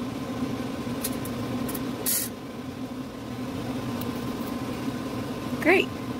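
Steady low mechanical hum, like a fan or other running appliance in the room, with a short rustle about two seconds in. A voice starts just before the end.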